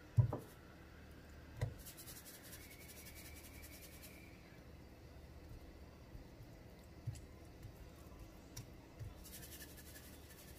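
Quiet handling of raw chicken drumsticks on paper towels over a wooden cutting board: a few soft thumps as pieces are set down and turned, the first just after the start being the loudest, with faint rustling of the paper towel.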